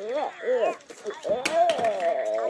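A high-pitched voice making wordless, sing-song play noises in rising and falling arches, with a single sharp click about one and a half seconds in.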